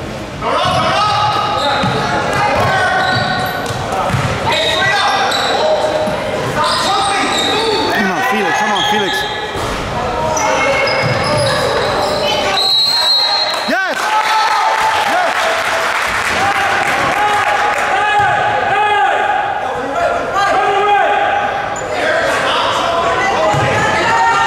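Basketball game in a reverberant gymnasium: a ball dribbling on the hardwood court, sneakers squeaking, and players and spectators calling out.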